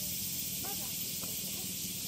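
A steady high hiss of outdoor background noise, with faint distant voices twice for a moment.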